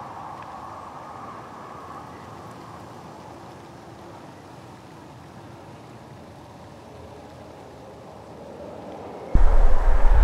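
Steady hum of distant highway traffic. About nine seconds in it gives way suddenly to a much louder low rumble.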